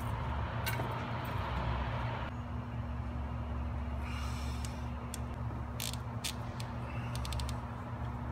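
Light metallic clicks and clinks of a long torque wrench and socket being handled on cylinder head bolts, a quick run of clicks near the end, over a steady low hum.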